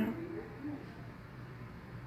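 Quiet room tone with a faint, steady low hum, after the last word of speech trails off at the start.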